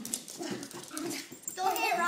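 Miniature pinscher making small vocal sounds while it mouths and knocks at a rubber balloon, with scattered short faint clicks; a voice starts near the end.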